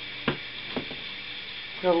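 Handling of an unplugged antique Westinghouse metal desk fan: one sharp knock about a quarter of the way in and a lighter click soon after, over a steady background hiss.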